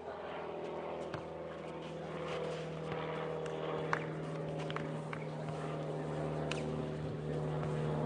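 A steady engine drone from a motor that is not in the picture, growing gradually louder, with a few sharp knocks of a ball being kicked, the loudest about four seconds in.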